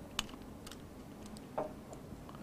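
A few faint, light clicks in a quiet room, with one sharper click near the start and a short duller sound near the end.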